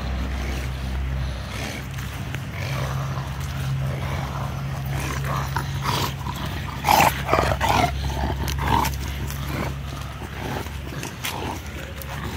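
A dog vocalizing in a handful of short, loud bursts about seven to nine seconds in, over a steady low hum.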